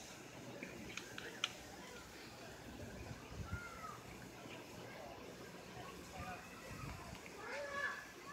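Faint voices in the background, with a couple of sharp clicks about a second in.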